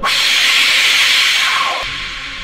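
A loud hiss that starts suddenly, holds for nearly two seconds, then drops away.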